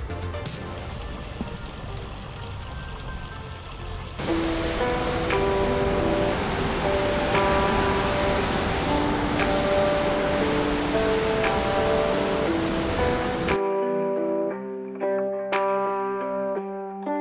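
Background music with a picked melody, over a steady rush of water pouring over a low dam spillway that starts suddenly about four seconds in and cuts off shortly before the end, leaving the music alone.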